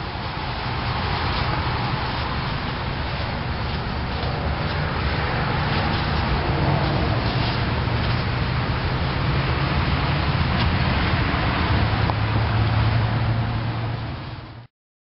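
Steady background rumble with a low hum, like passing traffic or machinery noise, with no clear single event.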